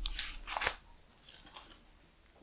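Paper pages being handled and turned: a few short, soft crinkling rustles in the first second, then fainter ones.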